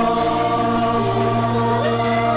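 A choir singing a Christian worship song, holding long, steady chords.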